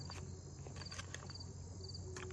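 A cricket chirping: short, rapid-pulsed chirps repeating about twice a second, with a few faint clicks.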